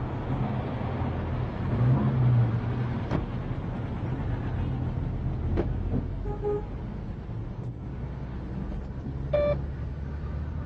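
Steady low rumble of a car engine running. A sharp click comes about three seconds in and a knock about five and a half seconds in, as a car door is opened and shut. A short buzz sounds near the end.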